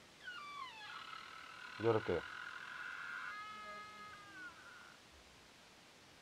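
A door creaking open: a high squeak that slides downward, holds steady for a few seconds, then drops lower and fades out.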